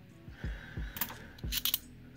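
Cupronickel 50-cent coins clicking against each other as a stack held in the hand is thumbed through coin by coin: a scatter of light metallic clicks with a few dull knocks.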